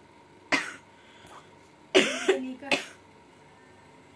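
A woman coughing: one sharp cough about half a second in, then a louder run of two or three coughs at about two seconds, partly voiced.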